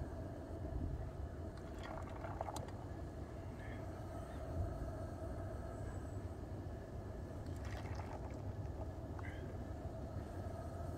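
A steel ladle clinking lightly against an iron pot of molten wheel-weight lead alloy as it is scooped and poured into a muffin-tin ingot mould, a few clinks about two seconds in and again near eight seconds, over a steady low rumble.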